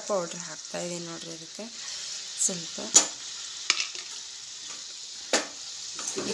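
Tomato masala frying in a steel kadai with a steady sizzle, while a steel spoon stirs it, giving a few sharp clicks against the pan in the second half.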